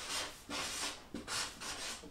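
Felt-tip marker writing on flip-chart paper: a handful of short scratchy strokes as a word is written.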